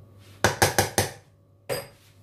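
A kitchen spatula knocked sharply against cookware, four quick knocks in about half a second and then one more near the end.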